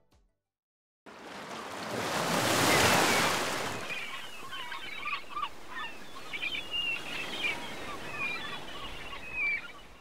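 Surf sound: a wave washes in about a second in, swells to its loudest a couple of seconds later, then settles into a steady wash. Birds call over it in short, repeated chirps.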